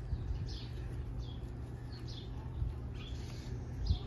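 Small birds chirping: a few short, falling high chirps about once a second, over a low steady rumble.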